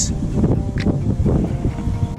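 Wind buffeting the action camera's microphone: a loud, uneven low rumble.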